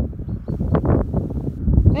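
Wind buffeting the microphone in uneven low rumbling gusts, mixed with rustling and handling noise as the camera moves.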